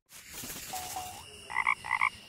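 Frog Box production-logo sting: two short high tones, then two frog croaks near the end.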